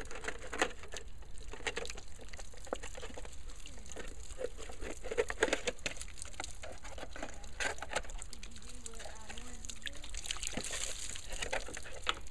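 Scissors snipping through the side of a plastic gallon jug packed with wet newspaper, a series of irregular sharp cuts, with some water running out of the opened jug.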